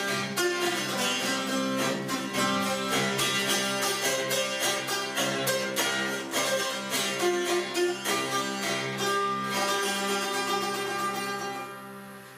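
Hungarian citera (fretted table zither) strummed rapidly, a melody of plucked notes over steadily ringing drone strings. The playing fades near the end.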